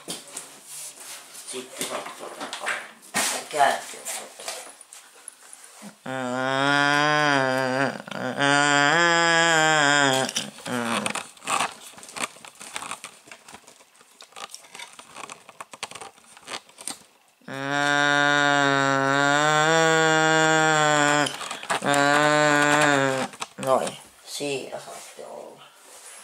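Knocks and handling clatter, then a person's voice holding long, low, nearly steady vocal notes. These come in two stretches, one of about four seconds around a quarter of the way in and one of about six seconds near the end.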